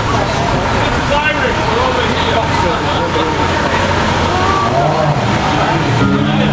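Indistinct voices of people talking, over the steady noise of cars passing on the street.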